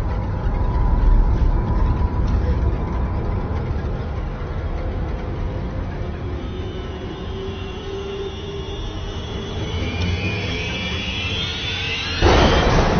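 Low, rumbling horror-film drone, with high sustained tones swelling in about halfway through and building in tension toward the end.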